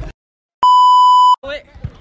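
Electronic beep tone edited into the soundtrack: about half a second of dead silence, then a loud, steady beep of about three-quarters of a second that cuts off abruptly.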